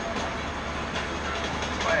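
Steady road and engine noise of a moving car heard inside the cabin, a low even rumble.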